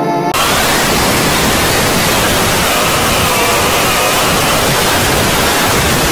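A few notes of music break off about a third of a second in and loud, steady static hiss takes over, with a faint wavering tone audible beneath it.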